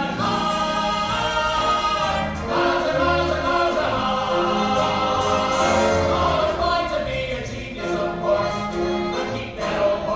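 A group of voices singing a show tune in chorus over instrumental accompaniment, with long held notes over a moving bass line.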